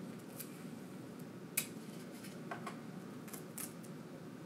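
Clear sticky tape being pulled off a small roll and torn: a few faint crackles and clicks, with one sharper snap about a second and a half in.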